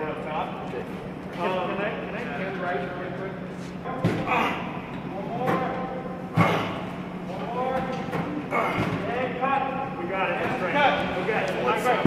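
Several people talking at once in a large, echoing hall over a steady low hum, with a few sharp thumps, the loudest about six seconds in.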